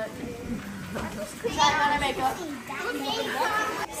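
Girls' voices chattering, quieter than close-up speech, with two stretches of talk in the middle and near the end.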